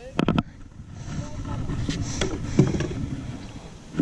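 A hooked bass being reeled in and lifted out of the water onto a wooden dock: splashing and handling noise that builds up after a couple of sharp knocks near the start.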